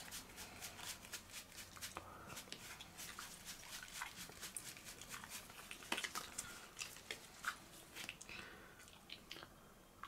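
Faint crackling and clicking of plastic-sleeved Magic: The Gathering cards being thumbed through in the hands, with a few sharper snaps along the way.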